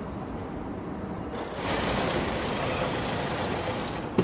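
Steady vehicle and outdoor rumble with hiss and no distinct events. It grows louder and brighter about one and a half seconds in.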